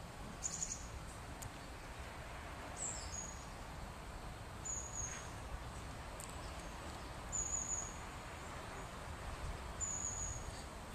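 Faint, steady background hiss with a handful of short, high chirps, a small bird calling now and then.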